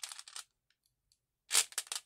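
Plastic beads clicking and rattling against each other and a clear plastic tray as a hand stirs through them, in two short spells with a silent gap of about a second between.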